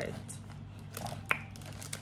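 Clear plastic packaging bag crinkling as it is handled, with scattered crackles, the sharpest just past the middle.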